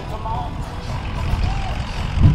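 Outdoor truck-show ambience: an uneven low rumble with faint distant voices.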